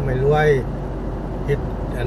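Steady road and engine noise heard inside a moving car's cabin at highway speed. A man speaks briefly at the start and again near the end.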